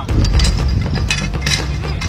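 Metal poles clicking and clattering as they are handled and knocked together, in quick irregular strokes over a steady low rumble.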